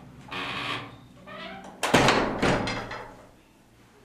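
A metal-framed glass door swinging shut: a rush of noise, a short rising squeak from the door, then a loud bang as it closes about two seconds in, with a second knock just after, dying away within about a second.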